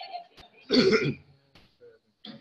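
A man clears his throat once, a short rough burst about three-quarters of a second in.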